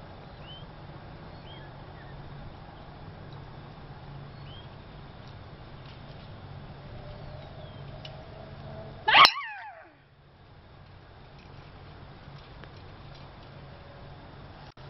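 A woman's shrill tennis-style scream on the downswing of a golf drive, together with the crack of the driver striking the ball about nine seconds in; the scream is brief and falls sharply in pitch.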